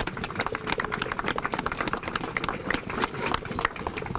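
Audience applauding: a dense, steady run of many hand claps.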